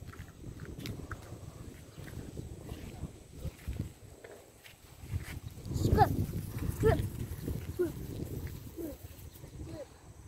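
A woman's brief giggles with falling pitch, loudest about six to seven seconds in and again faintly near eight to nine seconds, over a low rumbling noise.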